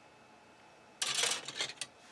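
Injection-moulded plastic model-kit parts trees (sprues) clattering and rustling as they are handled and swapped, a burst of about a second that starts halfway through after near silence.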